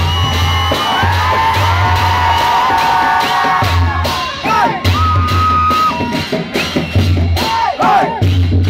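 Newar dhime drums and cymbals playing a driving, repeating rhythm, with whoops, shouts and whistles from the crowd over it.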